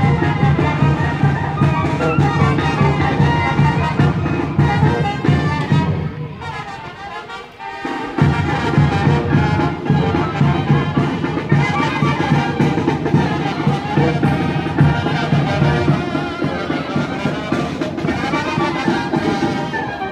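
Brass band with a sousaphone playing in a street wedding procession. The music thins out about six seconds in and comes back in full about eight seconds in.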